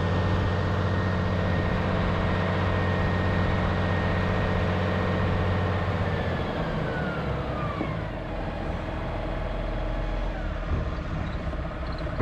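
Valtra tractor driving under steady engine load with a high transmission whine. About six seconds in the engine eases off and the whine falls in pitch as the tractor slows and stops, then it idles more quietly.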